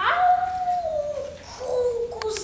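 A child imitating a wolf's howl: one long drawn-out 'oooo' that holds a steady pitch, then drops lower about a second in and trails on.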